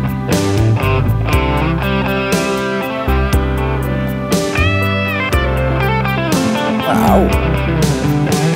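A guitar solo played back on its own from a song's studio multitrack, with a note bending downward near the end.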